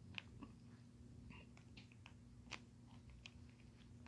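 Near silence: a faint steady hum with a few small, faint clicks scattered through it, the clearest about two and a half seconds in.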